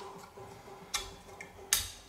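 Two sharp metallic clicks from a nut moved by hand in a homemade sheet-steel captive-nut holder, the nut knocking against its holder as it slides.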